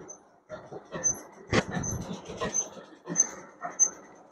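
Cloth and plastic wrapping rustling in irregular bursts as a printed muslin suit is handled and unfolded, with one louder rustle about one and a half seconds in. Faint short high peeps sound now and then.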